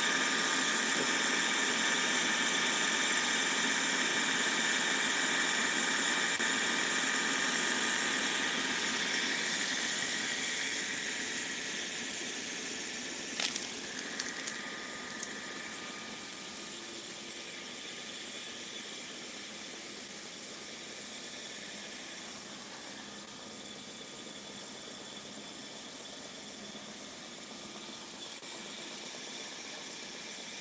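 Irrigation water-pump motor running with a steady hissing whine. It fades away over the second half, with a few clicks near the middle.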